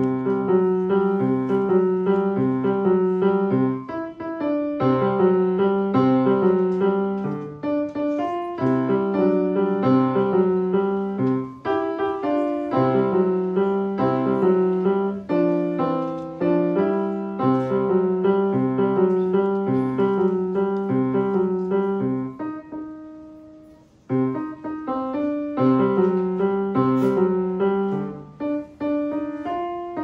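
A grand piano played solo in a boogie-woogie style: a steady, repeating left-hand bass figure under a right-hand melody. About two-thirds of the way through, a held chord fades out briefly before the playing picks up again.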